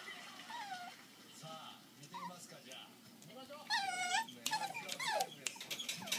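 Chihuahua–Maltese mix puppies whining: several short, falling whimpers, then a longer, louder whine about four seconds in, followed by more falling whimpers.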